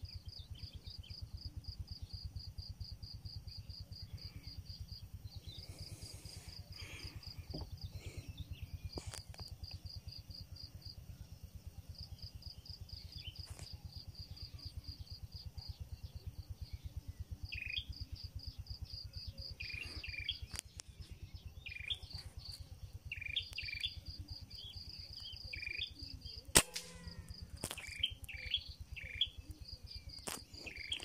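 An insect chirps in rapid, evenly spaced high pulses, about four or five a second, in long runs broken by short pauses. Birds give short chirping calls in the second half. A single sharp crack, the loudest sound, comes a few seconds before the end.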